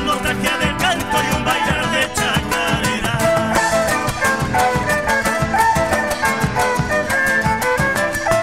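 Live Argentine folk band playing a chacarera on acoustic guitar, electric guitar, violin and drums, with a driving percussive rhythm under sustained melodic lines.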